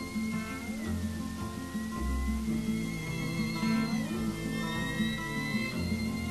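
Instrumental passage of a live song accompaniment, with no singing. A repeating plucked-string figure plays over low bass notes, under a high held melody line that slides slowly in pitch.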